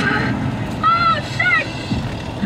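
Steady road and engine noise of a moving vehicle, heard from inside the cabin. About a second in come two short, high-pitched arched calls.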